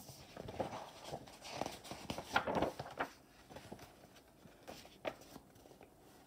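Pages of a picture book being turned and handled: faint paper rustling with a few light knocks, mostly in the first three seconds.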